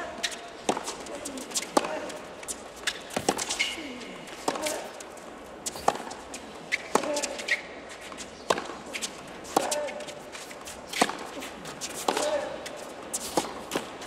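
A tennis rally on a hard court: sharp racket strikes and ball bounces about once a second, with sneakers squeaking briefly on the court and short grunts on some shots.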